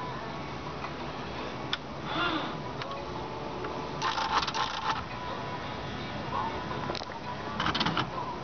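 TA Royal electronic daisy-wheel typewriter running its start-up initialization: the carrier travels across and the mechanism homes, with a single click a little under two seconds in and bursts of rapid clicking about four seconds in and again near the end. It now initializes properly, its cable connections having been reseated.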